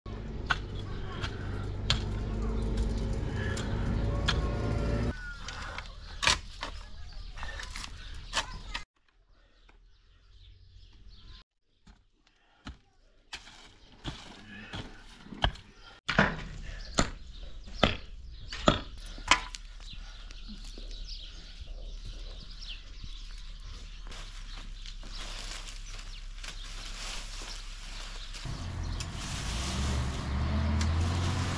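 Mattock blows chopping into stony garden soil: sharp knocks, roughly one every second or so, in several short stretches with changing background noise.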